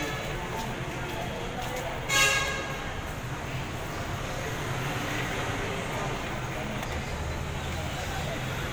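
Indistinct background voices over a steady low hum. About two seconds in comes a brief, loud, high-pitched sound.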